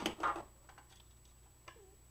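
A few light clicks of plastic toy-blaster parts being handled and fitted into the open shell, the sharpest right at the start, then a short scrape and faint ticks.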